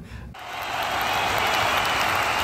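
A steady, applause-like hiss that starts about a third of a second in, the sound effect of a channel logo intro card.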